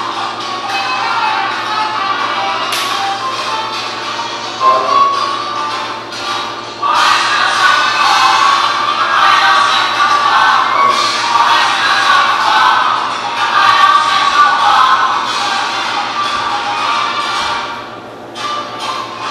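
Salsa music playing, getting louder and fuller about seven seconds in.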